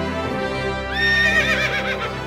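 Background music with a horse whinny sound effect about a second in: a high call that wavers up and down as it falls, lasting about a second.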